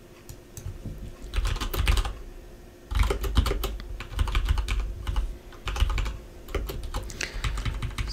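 Computer keyboard typing in several quick bursts of keystrokes with short pauses between them, starting about a second in.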